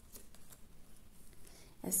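A Lenormand card is slid off the deck and turned over: a faint rustle of card stock with a few soft clicks. A woman starts speaking near the end.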